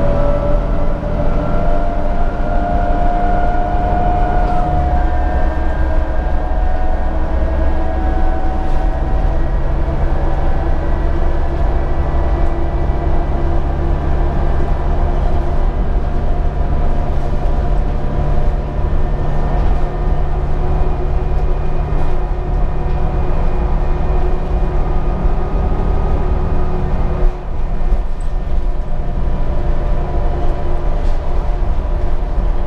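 Cabin sound of a 2013 New Flyer D60LFR articulated diesel bus under way. The engine and drivetrain hum and whine rise in pitch as the bus accelerates, change abruptly at a gear shift about five seconds in, and then hold steady at cruising speed with road noise.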